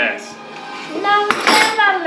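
Clink of a stainless steel canister being seated in a vertical sausage stuffer, a sharp metallic knock about a second and a half in, over background music with a singing voice.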